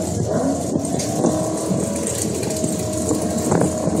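Drag-car V8 engines, one of them a Fox-body Mustang's, idling at the starting line while staging, with a couple of brief throttle revs.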